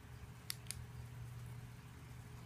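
Two sharp clicks about a fifth of a second apart, about half a second in, over a faint steady low hum.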